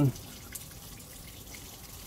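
Garden hose running water under a car, a faint steady splashing.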